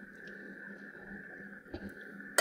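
Quiet room tone: a faint steady hum, with a couple of soft ticks near the end.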